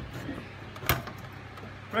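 A single sharp knock about a second in, from the snow machine's metal tube casing being handled, with a lighter click at the start.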